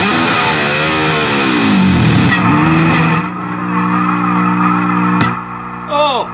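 Jackson Randy Rhoads electric guitar played loud: notes swoop down in pitch and back up with the Floyd Rose tremolo arm, then a note is held with a slight waver. A click comes near the end as the playing stops.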